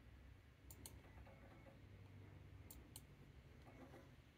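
Computer mouse buttons clicking: two quick pairs of clicks about two seconds apart, over a faint low hum.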